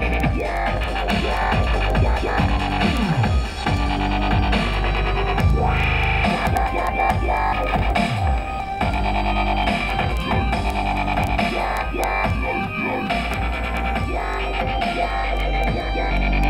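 Dubstep track with heavy deep bass and repeated falling bass sweeps, played through a car-audio subwoofer in a carpeted enclosure as a test of its newly wired harness.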